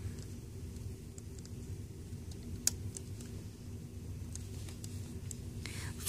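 Faint small clicks and taps of rubber bands being stretched over the plastic pins of a Rainbow Loom, with one sharper click a little before halfway, over a low steady background hum.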